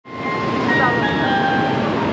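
Shinkansen train standing at a platform: a steady rushing hum from its equipment, with thin electrical whining tones that shift in pitch.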